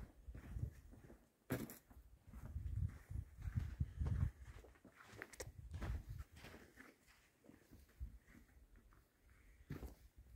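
Footsteps on loose rock and stony ground, uneven and irregular, with sharp clicks of stones knocking together and low rumbling scuffs in the first half.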